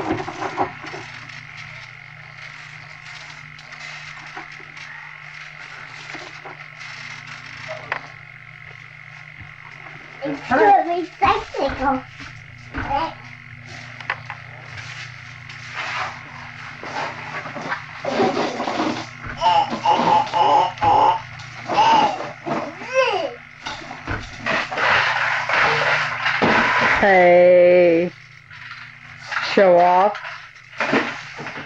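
A low steady hum, quiet for the first third. After that come wordless voice sounds with rising and falling pitch, like a small child squealing and babbling. The longest and loudest comes near the end.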